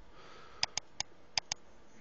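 Five sharp computer-mouse clicks in two quick groups, three and then two, as a layer's visibility is toggled on and off. They follow a faint sniff near the start.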